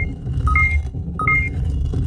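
Soundtrack sound design: a low rumbling drone with short two-note electronic beeps repeating about every two-thirds of a second.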